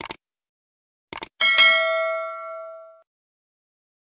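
Sound effects for a subscribe-button animation: two quick pairs of mouse-clicks, then a bright bell ding about a second and a half in that rings out and fades over about a second and a half.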